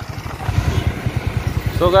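Motorcycle engine running steadily under way, with even low firing pulses over road and wind noise.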